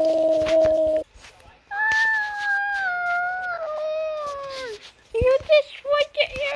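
A person's voice: a held steady note that stops about a second in, then after a short pause one long note that slides slowly downward over about three seconds, followed by quick short syllables near the end.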